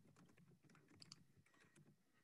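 Faint, rapid clicks and taps of a computer keyboard being typed on, stopping near the end.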